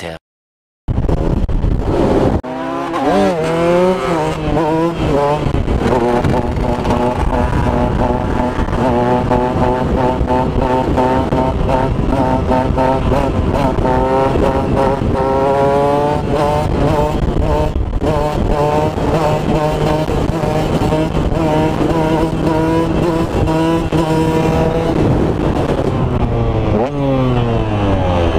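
A KTM supermoto's single-cylinder engine heard from on board, pulling hard and held at high revs, its pitch climbing in steps in the first few seconds and again in the middle, then falling away near the end as it slows. The engine comes in after about a second of silence.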